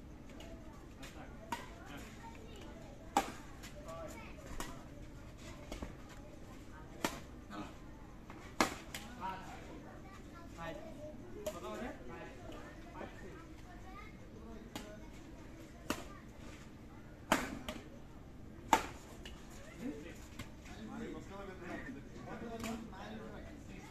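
Badminton racket strings striking a shuttlecock during rallies: a series of sharp pops, each a second or more apart, some much louder than others.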